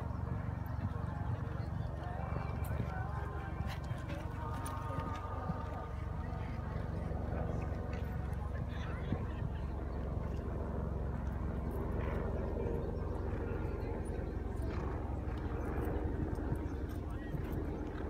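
A show-jumping horse cantering round a sand arena course, its hoofbeats mixed with faint voices over a steady low rumble.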